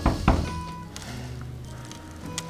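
Two heavy thuds about a third of a second apart, the first right at the start, over low sustained music tones that carry on afterwards.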